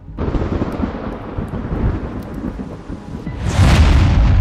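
Cinematic logo-reveal sound effect: a rough, crackling thunder-like rumble that starts suddenly, then swells into a loud rushing rise near the end as the logo appears.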